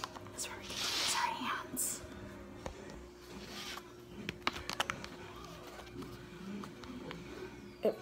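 Homemade moon dough (flour mixed with baby oil) being crumbled and pressed by hand and worked with a fork in a plastic tub: soft rustling, then a few light clicks of the fork against the plastic around the middle. A steady low hum runs underneath.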